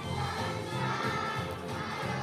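A large choir of kindergarten and first-grade children singing a song together, continuously and without pause.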